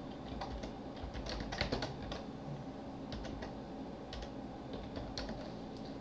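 Typing on a computer keyboard: irregular key clicks, some in quick runs.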